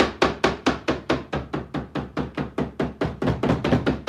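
Stencil brushes pouncing paint through stencils onto wooden boards: a steady run of quick dabbing taps, about six a second.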